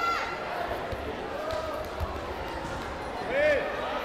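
Dull thuds of bare feet stepping and bouncing on a foam taekwondo mat, with a high yell cutting off at the start and a short voiced call about three and a half seconds in, over the noise of a sports hall.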